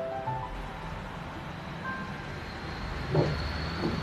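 Quiet background music under a low steady hum, with a short stepped run of notes in the first second.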